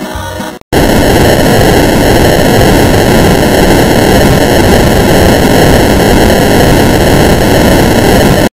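Layered music cuts off about half a second in. Then comes a very loud, harsh wall of distorted, static-like noise, the overdriven sound of stacked effects-edit audio, holding steady.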